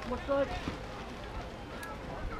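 A raised, sung-out voice calls briefly about half a second in, then faint overlapping chatter and calls from players and spectators carry on underneath.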